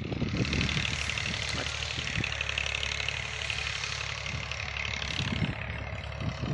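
Steady outdoor background: a constant low rumble with a broad hiss and faint distant voices, no single event standing out.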